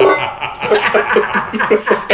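A man and a woman laughing together in quick repeated bursts.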